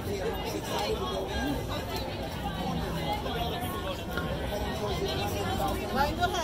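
Crowd chatter: many people talking at once in an overlapping babble of voices.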